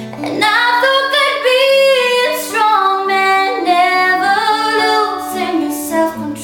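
A woman singing with long held notes over an acoustic guitar, the voice coming in loud about half a second in.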